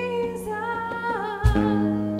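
Live church worship band playing: a woman sings a held, gliding melody over sustained bass and chords. About one and a half seconds in, the band strikes a new chord with a sharp attack.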